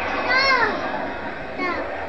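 A young child's high-pitched vocal cry, its pitch rising and then falling, about half a second in, followed by a shorter falling cry near the end, over the film soundtrack.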